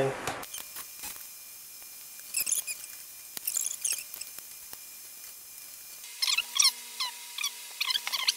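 Small screwdriver driving the bottom-panel screws of a Dell Inspiron 11 3000 2-in-1 laptop, the screws squeaking in short high runs with each turn, once briefly and again near the end.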